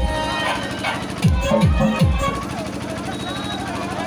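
DJ dance music played loud over a sound system. Deep, falling bass kicks play for about a second near the start, then the beat drops out, leaving held tones and a voice until the kicks return just after.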